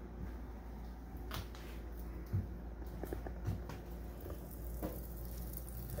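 Quiet kitchen room tone: a low steady hum with a few scattered light clicks and knocks.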